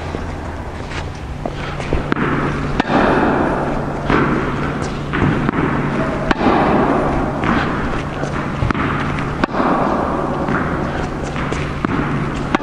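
Tennis balls struck with a racket on forehands about once a second, each hit a sharp pop that echoes in an indoor court hall, over a steady low hum.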